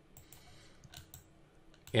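Faint computer mouse clicks in two small clusters, about a third of a second and about a second in.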